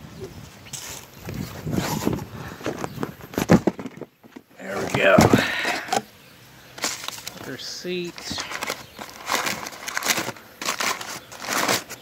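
Cardboard box flaps and crumpled packing paper rustling and crackling in irregular bursts as a boxed new brake caliper is unwrapped by hand. A short voice-like sound with gliding pitch cuts in about five seconds in.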